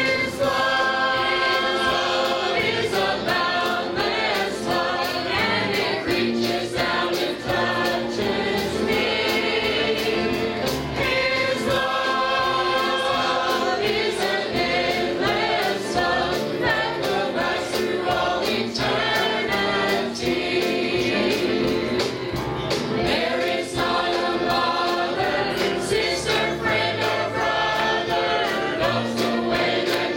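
Mixed choir of men and women singing a gospel song together, over a regular beat of sharp hits.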